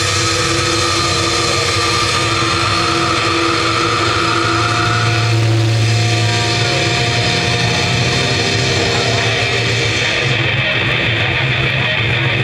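Death metal band playing live through a festival PA: heavily distorted guitars over a heavy bass low end, a loud, dense, unbroken wall of sound with long held notes. The highest hiss thins out about ten and a half seconds in.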